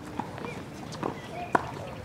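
A few sharp knocks of tennis balls on a hard court, the loudest about one and a half seconds in.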